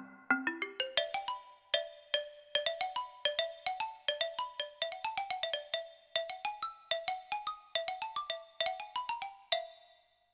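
Yamaha PSR-270 keyboard played with a struck, fast-decaying voice: a rising run of quick notes at the start, then a busy melody of short notes that each fade out.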